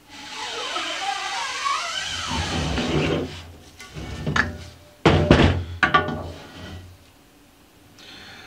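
Music for the first three seconds, then several heavy thunks about five seconds in, typical of a screen-printing frame and scoop coater being handled and set down on the work table.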